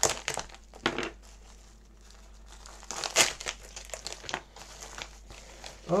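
Plastic parcel packaging crinkling and rustling in irregular short bursts as it is cut open and unwrapped by hand, loudest about three seconds in.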